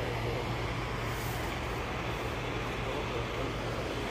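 Steady road and engine noise of a moving car heard from inside the cabin, a constant low hum under an even rush.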